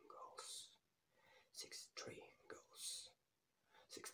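A man whispering quietly in short phrases, counting off numbers of goals one after another.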